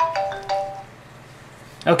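Two bell-like chime tones about half a second apart, each struck sharply and fading out.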